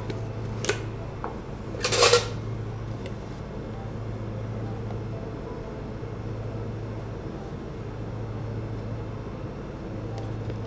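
Steady low hum of kitchen ventilation, with a sharp click a little under a second in and a louder clatter at about two seconds as a tin of emulsifier powder is opened and handled on a steel counter.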